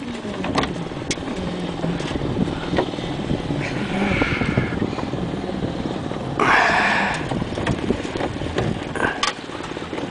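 Steady rumble of wind and lake water around a small aluminium boat, with a few light knocks against the hull and a brief louder rush of noise a little past halfway.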